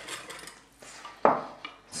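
Quiet kitchen handling of dishes and utensils: one short dull knock a little over a second in, then two faint clicks.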